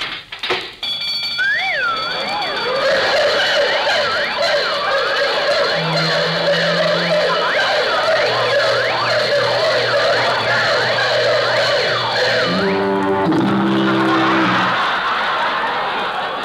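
Burglar alarm sound effect going off as a vault opens: a loud jumble of warbling sirens, ringing bells and whistles, with deep horn blasts from about six seconds in and a rapid clanging rattle near the end, giving way to audience laughter.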